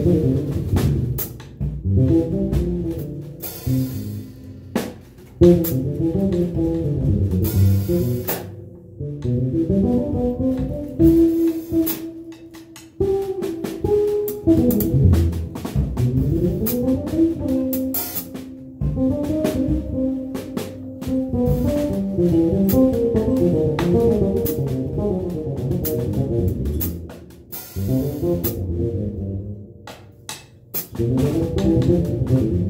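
A small jazz band playing live: saxophone lines over electric bass, guitar and drum kit with cymbals.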